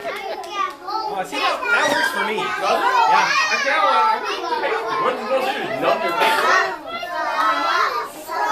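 A roomful of children talking and calling out at once, many overlapping young voices in a continuous babble.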